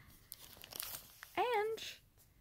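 Plastic packaging crinkling as it is handled, a run of faint crackles, with a brief hum of a woman's voice about one and a half seconds in.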